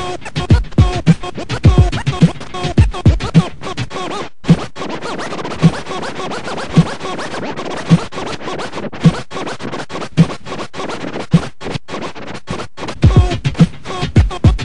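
Turntable scratching of a sample through M-Audio Torq with a timecode control record, cut against a hip-hop beat with a kick about twice a second. A little after four seconds in the beat drops out and the scratches carry on alone, with accents about once a second, until the beat comes back near the end.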